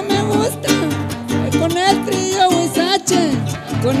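Huapango huasteco played live by a trío huasteco: a violin carrying a wavering, sliding melody over steadily strummed jarana and huapanguera, between sung verses.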